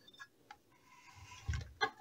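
Faint handling clicks from a circuit board, then a soft knock about one and a half seconds in and a smaller one just after, as the card is set down on a wooden desk.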